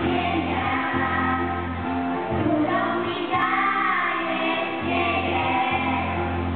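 A children's choir singing a hymn-like religious song together, in phrases of a second or two, with held low notes sounding beneath the voices.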